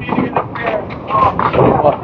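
Indistinct voices talking in a bowling alley, in overlapping bursts of chatter.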